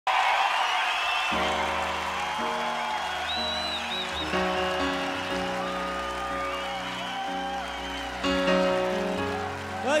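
A large concert crowd cheering and whistling, with sustained keyboard chords coming in about a second in and changing every second or so.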